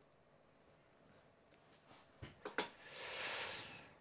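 A quiet pause with faint, high, repeated chirps in the first second. Then a few mouth clicks and a breath drawn in close to a microphone, about three seconds in, loudest near the end.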